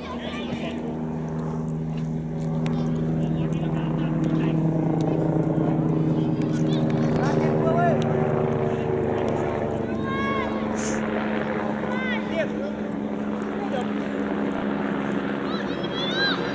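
A steady engine drone with a low, even hum that swells over the first several seconds and then holds. A few short shouted calls rise over it, near the middle and near the end.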